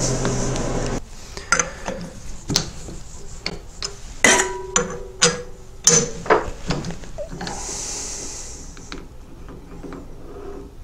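Clinks and knocks of steel tooling being handled in a lathe's four-jaw chuck: the boring head is turned on its shank and the chuck key works the jaws. There is one sharper, ringing metal knock about four seconds in, and a soft rubbing sound near the end.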